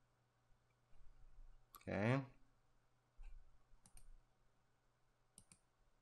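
Faint computer mouse button clicks, with two quick pairs like double-clicks a little past halfway and near the end.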